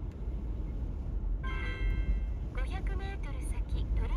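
Steady low road and engine rumble inside a moving car. About a second and a half in, a short electronic chime sounds, followed by a recorded voice announcement from an in-car alert device.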